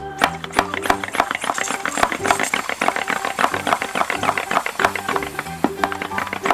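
Background music with a simple stepped melody, over a dense run of rapid, irregular clicks and squeaks from a rubber water balloon stretching as a hand pressure sprayer fills it with water.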